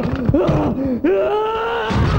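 A person groaning and crying out in pain: short rising-and-falling moans, then one long drawn-out wail from about a second in.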